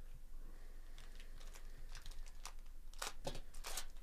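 Foil wrapper of a trading card pack being torn open and crinkled: a run of short crackles that grows busier and louder in the last second or so.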